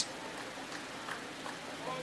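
Faint, steady ballpark ambience between plays: a low background haze with a few faint ticks.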